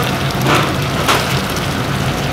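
Milky bone broth pouring in a heavy stream from a tilted giant cauldron into a steel stockpot and splashing, with two louder gushes about half a second and a second in. A steady low hum runs underneath.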